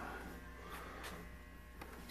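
Quiet indoor room tone: a steady low electrical hum with a faint haze of background noise and a few faint clicks.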